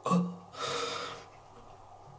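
A man's brief voiced sound followed by a breathy gasp of about half a second.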